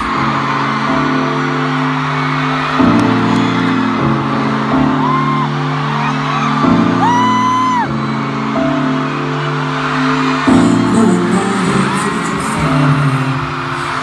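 Concert music playing through an arena PA: slow, held keyboard chords that change every second or so after a beat-driven song has stopped. A few high fan screams rise and fall over the chords around the middle.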